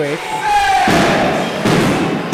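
A wrestler lying on the ring canvas clapping his hands together above him in quick thuds, with a long falling call from a voice before it.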